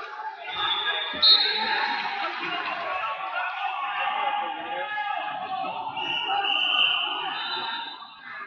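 Gym hall sound of coaches and spectators talking and shouting, with a short, sharp high whistle blast about a second in: a wrestling referee's whistle restarting the bout. Further high whistle tones sound near the end.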